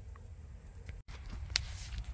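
Quiet background noise with a low rumble, broken about a second in by a brief total dropout where the recording cuts, followed by a faint click.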